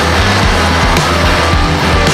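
Loud, dense heavy blues-rock studio recording with a full band: a steady deep bass line under a regular drum beat.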